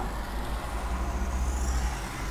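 Marker pen drawing a curve on a whiteboard: a faint stroke over a steady low hum.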